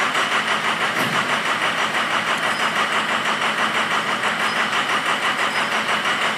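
Ford 6.0L Power Stroke V8 turbodiesel idling roughly just after starting, its loudness pulsing unevenly. It is misfiring on several cylinders because air is still trapped in the high-pressure oil rail, and it runs badly until that clears.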